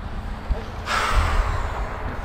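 A person's long, breathy exhale, lasting about a second and starting abruptly near the middle, over a steady low rumble of wind on the microphone.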